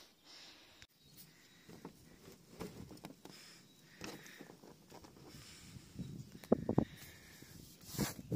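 Plastic Husky 510 roof box being handled and shut: quiet rubbing and fumbling, then a few sharp clicks about six and a half seconds in as the lid latches and locks.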